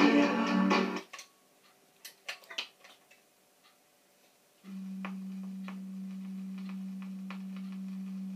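RCA Victor 45 EY2 battery record changer: the record's music stops about a second in, followed by a run of sharp mechanical clicks as the changer cycles to the next 45. From about halfway a steady low hum with faint ticks comes through the player's speaker as the needle rides the new record before the song starts.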